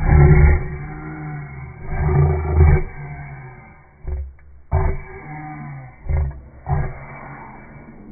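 A person's non-word vocal noises and breaths very close to a phone microphone, in loud bursts: two longer ones in the first three seconds, then several short ones.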